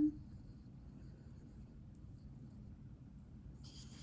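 Quiet room tone. Near the end comes a faint, soft rustle of fingers handling a small snake and a pinky mouse.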